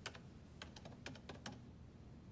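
Faint computer keyboard typing: a run of about ten quick, irregular key clicks.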